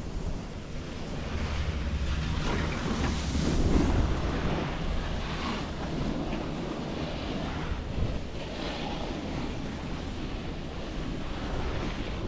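Wind rumbling on the microphone of a rider on an open chairlift, with the hiss of skis and a snowboard scraping and carving across groomed snow below, swelling as riders pass, loudest about four seconds in.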